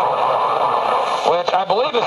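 AM broadcast reception on a Sony TFM-1000W portable radio: dense, hissy static from a weak signal, then a little over a second in a station announcer's voice comes through clearly from the speaker.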